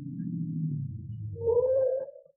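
Radio-drama sound effect of a taxi pulling up: a low engine rumble that sinks in pitch as the car slows, then a short brake squeal about a second and a half in as it stops.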